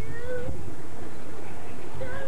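A distant person's voice calling out once in a long, drawn-out rising shout near the start, over a steady low rumble.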